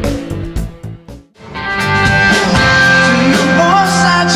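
Live rock band music. A picked electric guitar part cuts out about a second in, and after a brief gap the full band comes in with electric guitar, bass and drums, a voice singing near the end.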